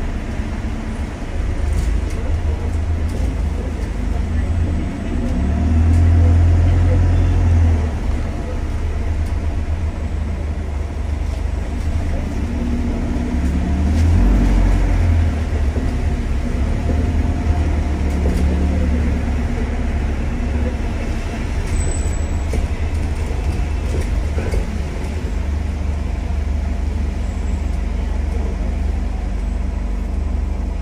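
On board a London double-decker bus in motion: a steady low engine and road rumble that swells louder twice, about a quarter of the way in and again near the middle, as the bus pulls harder.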